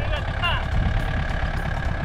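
Compact tractor engine running steadily as the tractor drives across grass with a heavy load in its front-loader bucket. A brief voice comes in about half a second in.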